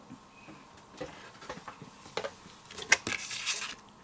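Light clicks and knocks of a plastic stamping platform being handled and set in place over an alignment template: a few separate taps, the sharpest about three seconds in.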